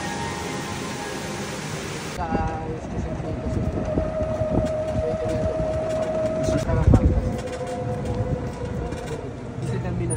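Riding in a moving vehicle: a steady motor whine over low road rumble, dropping slightly in pitch about seven seconds in with a low bump. A cut about two seconds in separates this from a different ambience at the start.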